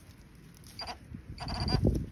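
Electronic metal-detector target tones: a short beep a little under a second in, then a longer tone from about halfway. Low scraping of a digging tool in the soil comes under the second tone.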